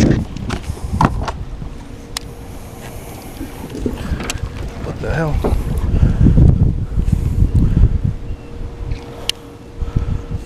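Wind buffeting the microphone in uneven gusts. Under it are a few sharp clicks and, from a few seconds in, a faint steady hum.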